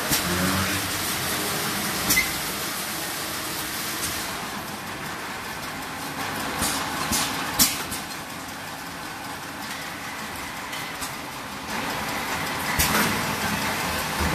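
An RFC 4-4-1 water filling machine for 5-litre bottles (four rinsing nozzles, four filling nozzles, one capping head) running: a steady mechanical noise with a few sharp clacks, a cluster near the middle and two more near the end.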